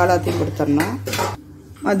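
Stainless-steel kitchen vessels clinking, with a couple of sharp metallic knocks about a second in, while a voice talks over them.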